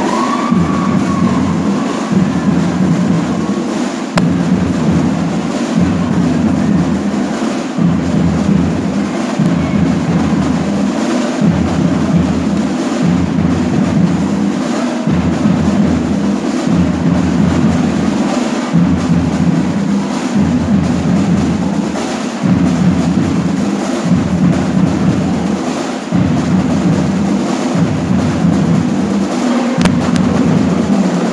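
Fanfarra marching band playing, its drum section of snare and bass drums carrying a steady marching beat with a regular low pulse.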